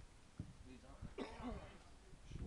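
A person's short vocal sound about a second in, after a faint low thud.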